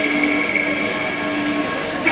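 Cantonese opera music holding one long note, steady in pitch with a few short breaks.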